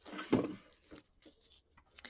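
Metallic faux leather appliqué crinkling as it is handled and trimmed with curved scissors in an embroidery hoop: a short rustle in the first half second, then a few faint snips.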